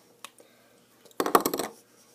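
A faint click, then about a second in a brief clatter of several quick clicks lasting about half a second, like small hard objects knocking together.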